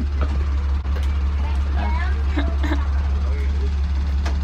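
Open-sided parking-lot tram in motion: a steady low drone from the moving tram, with faint voices of riders in the background.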